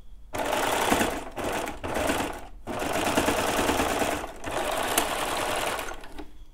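Baby Lock serger stitching a seam through four layers of stretch swim fabric. It runs in spurts, with a brief stop about two and a half seconds in, then a steady run until just before the end.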